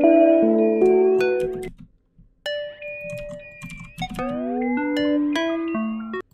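Omnisphere synth patch being auditioned: a run of sustained melodic notes, several sliding upward in pitch, broken by a short silence about two seconds in.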